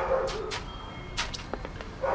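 A plastic squeeze bottle drizzling sauce over chicken in a foil-lined cooler, with a short sound at the very start and then a few sharp clicks and sputters.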